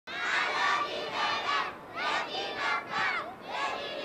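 Many children's voices shouting together in repeated bursts, each lasting about half a second, with short breaks between.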